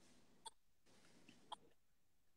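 Near silence, with two faint short clicks about a second apart.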